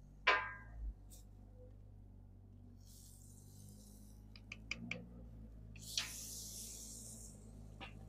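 A cast-iron Dutch oven and its lid being handled: a ringing metal clink just after the start, a few light clicks in the middle as the stew is stirred, a hiss lasting about a second at six seconds, and a click near the end as the lid goes back on.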